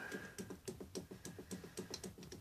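Faint, quick clicking of a cologne bottle's pump sprayer pressed over and over, about four or five clicks a second, with the pump failing to spray.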